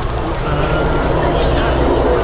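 Jet engine noise from a Blue Angels F/A-18 Hornet flying past, a steady low rumble that grows a little louder.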